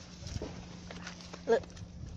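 Footsteps of a person walking, as faint scattered clicks with a low thump about a third of a second in, under a steady low hum. A man's voice says "Look" about a second and a half in.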